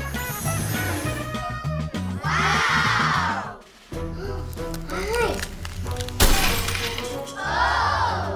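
Children's background music with a swelling whoosh about two seconds in, then one sudden loud glass-like shatter about six seconds in, as the icy shell around the chocolate egg breaks and the candies spill out.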